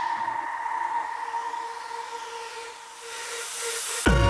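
Breakdown in an instrumental electronic dance track: a held synth tone over a hiss of noise. It fades, then a rising noise swell builds through the last second into the return of the beat.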